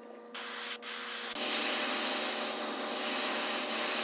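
Airbrush spraying paint: a steady hiss that grows loud about a second in, over a low steady hum.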